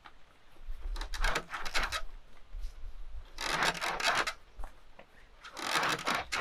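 Dressed rabbit hide drawn back and forth over a wire cable to soften it, the cable rubbing with a rasp against the skin. There are three strokes of about a second each, about two seconds apart. The hide is being stretched so its fibers pull apart rather than glue together as it dries.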